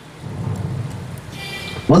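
A short pause in a man's amplified speech, filled by a low rumbling noise. Near the end there is a brief hiss, then his voice comes back.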